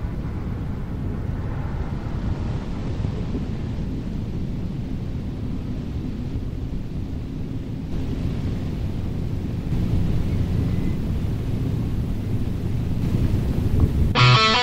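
A steady low rumbling noise without speech or a clear pitch, growing a little louder about ten seconds in.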